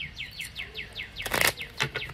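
A songbird singing a fast trill of short down-slurred chirps, about seven a second, that stops after a little more than a second, with two short crisp noises, one about a second and a half in and one at the end.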